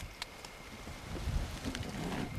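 Handling noise and low wind rumble on a camcorder microphone as it is moved through brush, with a few faint clicks and rustles.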